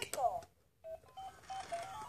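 Electronic toy crawl ball playing a short tune of beeping notes, starting about a second in, each note a steady tone stepping up and down in pitch.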